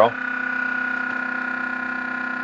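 Muller-type magnet motor running steadily with its pulsed driver coils, giving an even electrical hum of several steady tones.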